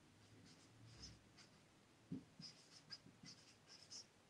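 Dry-erase marker writing on a whiteboard: a run of short, faint squeaks as the letters are drawn stroke by stroke.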